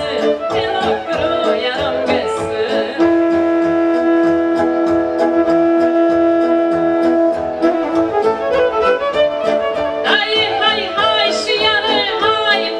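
Romanian folk song performed live: a woman singing into a microphone over a band with fiddle. In the middle her voice drops out while the band holds one long steady note, and her singing returns, with heavy vibrato, near the end.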